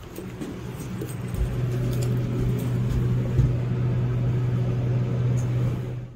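Elevator car running: a steady low hum that builds over the first second or so and then holds, with a few dull low thumps.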